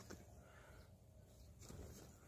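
Near silence: faint background only.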